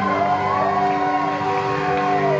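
Live rock band music: a sustained electric lead-guitar note bending slowly up and down over a held chord.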